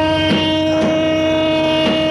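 No-wave band playing live: a droning chord held steady throughout, struck through by drum hits every half second to a second, some in pairs.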